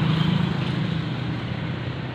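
Small motorcycle engine of a tricycle (motorcycle with sidecar) running steadily at low speed, its hum easing slightly about halfway through.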